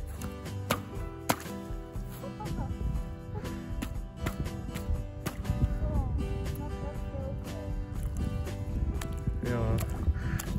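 Background music with steady held notes, over which a boot kicks and stamps at thin pond ice, giving repeated sharp knocks and cracks, the loudest about a second in.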